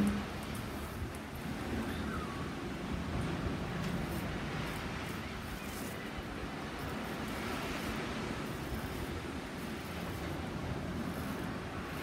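Steady ambient background noise, an even low rumble and hiss with no distinct events standing out.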